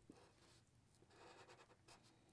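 Faint scratching of a Sharpie marker on paper drawing a zigzag line, in short strokes through the second half.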